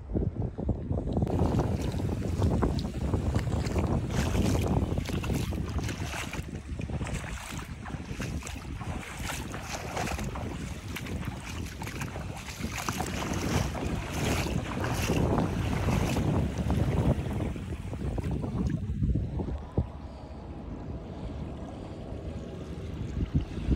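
Wind buffeting the microphone in an irregular low rumble, over the hiss and wash of shallow seawater. A brighter, flickering hiss sets in about a second in and eases off near the end.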